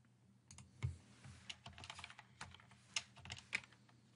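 Faint, irregular clicking of computer keyboard keys, a run of quick key presses starting about half a second in and lasting about three seconds, typing while editing code.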